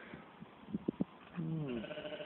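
A sheep bleating: one long bleat starting past the middle, its pitch dipping at first and then held. A few short clicks come just before it.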